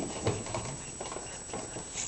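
A thick marker tapped against paper on a table: a few light, quiet taps.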